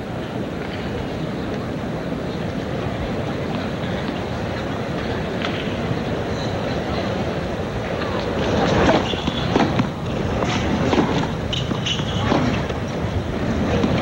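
Steady murmur of a stadium tennis crowd. From about eight and a half seconds in, a tennis serve and rally: a handful of sharp racket-on-ball hits and bounces about a second apart.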